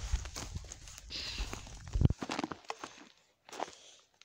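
Footsteps through snow and brush, with rustling and scattered clicks and one louder thump about halfway through.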